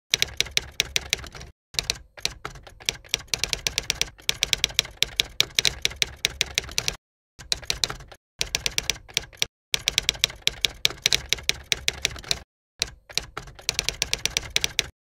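Typewriter keystroke sound effect: fast runs of sharp clicks, several a second, broken by short dead-silent pauses between phrases.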